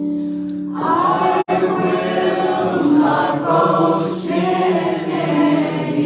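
Worship band music: singers start a sung line about a second in over held electric keyboard chords. The sound drops out for an instant shortly after the singing starts.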